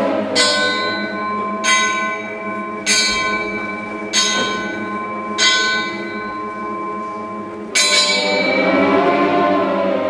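A bell tolling six times, the first five about a second and a quarter apart and the last after a longer gap near the end, each stroke ringing on. Underneath, an orchestra holds a sustained accompaniment that swells again with the last stroke.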